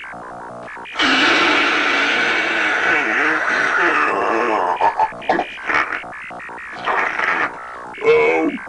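Comic electronic sound effect: a loud warbling noise starts about a second in and runs for several seconds, then breaks into shorter bursts, over a quieter background music bed.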